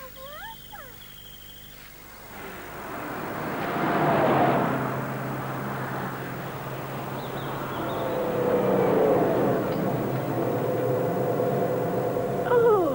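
Cartoon sound effect of motor vehicles on a road: a rushing engine noise builds to a peak about four seconds in, then a truck's engine grows louder again as it draws near.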